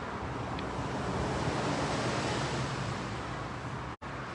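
Steady rushing background noise with a low hum underneath.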